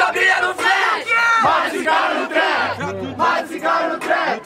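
Crowd of spectators shouting and cheering together, many voices over one another, with the backing beat stopped.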